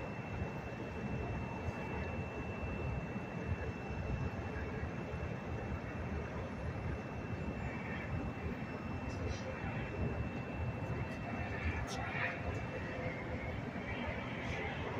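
Steady outdoor city rumble of traffic and distant machinery, with a faint steady high whine that stops near the end.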